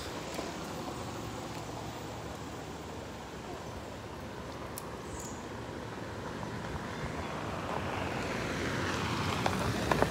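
A car (white SUV) driving up a gravel road, its tyre and engine noise growing steadily louder over the last few seconds as it comes close.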